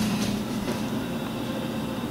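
Steady low background hum with a faint rumble.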